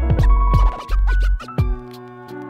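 Instrumental hip-hop beat: deep bass and drum hits under sustained keys, with turntable scratching in the middle. The bass and drums drop out near the end, leaving the keys.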